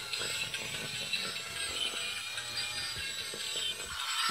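Battery-powered bump-and-go toy truck (Miracle Bumping Car) playing its electronic tune while its small motor and gears whir as it drives itself around.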